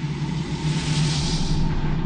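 Title-sequence sound effect: a whoosh that swells to a peak about a second in and then fades, over a steady low hum.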